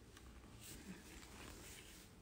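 Near silence with a few faint small clicks and rustles, as of gloved hands working a nail-treatment brush and its bottle.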